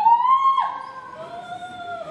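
A wailing, siren-like tone. It glides upward in pitch, drops suddenly about half a second in, then holds steady at a lower pitch.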